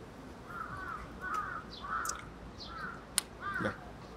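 A bird calling over and over, short arched calls coming roughly every half second. A single sharp click sounds near the end.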